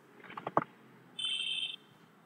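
A few light clicks, then about a second in a single steady electronic beep lasting about half a second.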